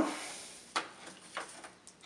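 Two faint clicks about half a second apart as the metal hood latch assembly is handled and turned in the hands.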